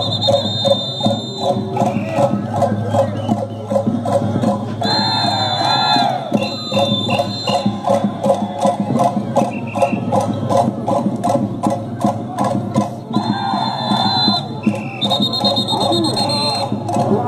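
Andean carnival band music: a drum beating a fast, steady rhythm, with high held tones over it in stretches and wavering voices or melody lines joining twice.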